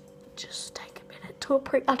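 A girl whispering, then starting to speak aloud near the end.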